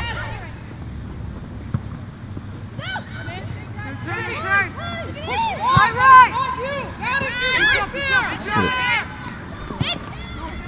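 Several voices on the sideline of a soccer game, calling out and talking over one another; they are faint for the first few seconds and grow loud and busy from about three seconds in.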